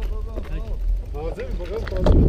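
People talking, with a steady low rumble of wind on the microphone underneath.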